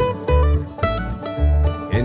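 Acoustic bluegrass string band playing a short instrumental fill between sung lines: plucked string notes over bass notes, with no singing.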